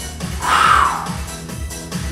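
Background workout music with a steady, fast beat, with a short falling whoosh about half a second in.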